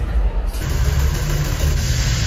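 Loud, deep rumble from a concert sound system, starting suddenly, with a hissing roar added about half a second in, as heard through a phone's microphone.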